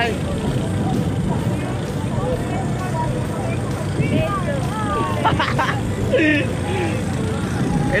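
Steady low rumble of a passenger boat's engine under way, with people's voices chatting in the background.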